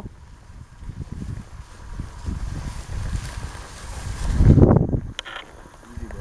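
Wind buffeting the microphone in an uneven low rumble, with some rustling as the person moves through tall grass; it swells to a loud buffet about three-quarters of the way through, then drops back.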